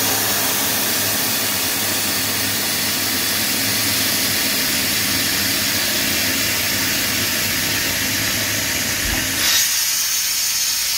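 Engine-driven Airman portable air compressor running, a steady low engine hum under a loud, even rush of compressed air being released. Near the end the rush turns into a thinner, higher hiss.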